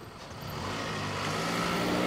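A car approaching on the road, its engine and tyre noise growing steadily louder from about half a second in.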